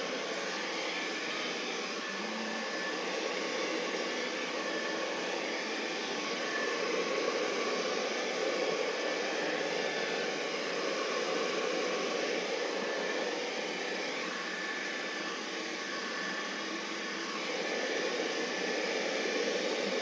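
Hand-held hair dryer blowing steadily while drying bangs: an even rushing noise with a faint steady whine above it, swelling and easing slightly.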